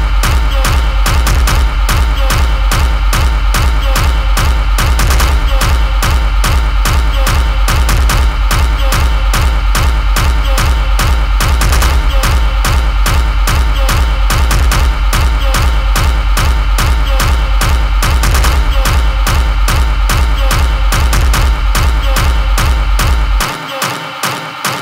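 Industrial techno track: a loud, dense mix driven by a steady pounding kick drum under layered noisy synths. The bass and kick drop out near the end.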